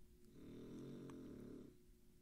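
Near silence, with a faint low sound lasting about a second in the middle.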